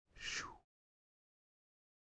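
A brief vocal sound from a man, falling in pitch and lasting under half a second.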